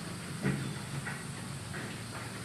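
Steady background hiss with faint handling sounds of homemade putty being rolled by hand on a tabletop, and a soft knock about half a second in.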